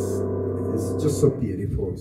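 Steinway & Sons baby grand piano with held notes ringing on steadily. About halfway through they break off into a short jumble of softer, irregular sounds.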